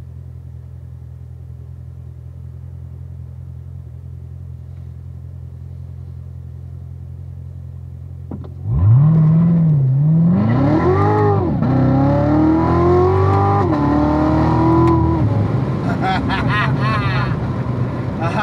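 Corvette Z06 V8 idling steadily, heard from inside the cabin. About eight and a half seconds in it launches at full throttle: the engine note climbs steeply and drops back at each of three upshifts, pulling hard through the gears from a standstill to highway speed.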